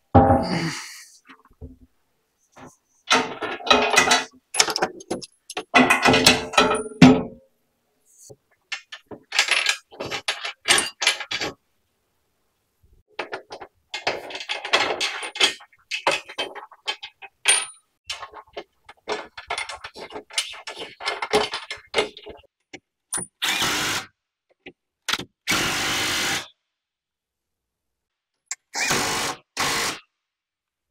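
Hand work bolting a steel skid plate into place: knocks and clicks of bolts, washers and metal plate, in short bursts cut apart by silent gaps. Near the end a cordless power tool runs twice briefly, driving the bolts home.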